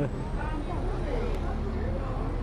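Steady low engine rumble of a road vehicle, with faint voices in the background.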